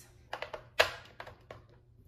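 AA batteries being handled and pressed into a plastic battery compartment in a trash can lid: a handful of short clicks and taps, the loudest a little under a second in.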